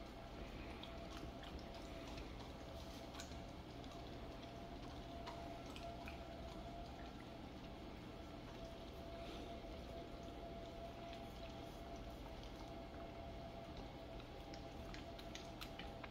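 Two dogs licking and nibbling at a treat held out by hand: faint wet licking and mouth clicks, scattered irregularly, over a faint steady hum.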